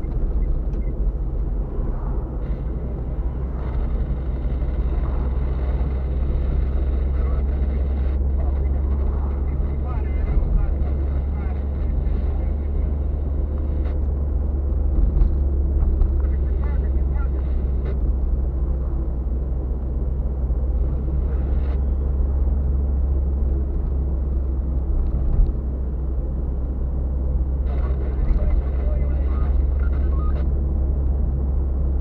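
Car driving, heard from inside the cabin: a steady low rumble of engine and tyres on the road.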